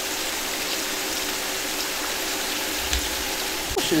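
A small forest stream running over rocks: a steady, even rush of water.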